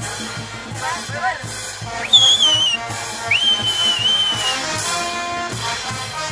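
Band orchestra with brass playing festive dance music with a steady beat. About two seconds in, two loud high whistles cut over it: the first wavers and falls, and the second slides up and is held for about a second.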